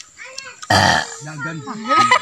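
A short, loud, harsh vocal burst, like a burp or cough, about two-thirds of a second in, followed by a man's speech.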